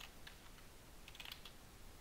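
Faint computer keyboard typing: a few scattered keystrokes in two short clusters.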